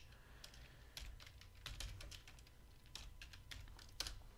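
Faint computer keyboard keystrokes: a scattering of irregular key clicks as a short terminal command is typed and entered.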